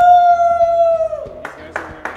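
A person's long "woo!" cheer: the voice sweeps up into one high note, holds it steady for about a second and a half, then fades out.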